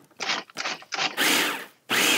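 Food processor pulsed three times, the last pulse longer, its blade chopping a coarse mixture of toasted walnuts, crackers and cheese with eggs.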